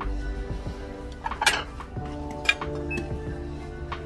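Background music with steady held notes, over ceramic cups and plates clinking as they are handled, a few times, the loudest about one and a half seconds in.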